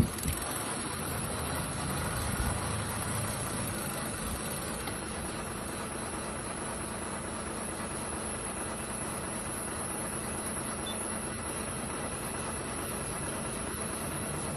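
Steady rumble and hiss of an idling vehicle engine.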